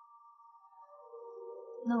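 Background score of long held notes, a high pair joined by lower notes about a second in, building slowly. A woman's voice starts speaking right at the end.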